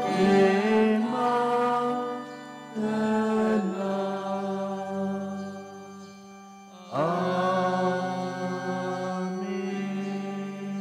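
Sung prayer chant in long held notes over steady sustained low tones. New phrases begin about three and seven seconds in.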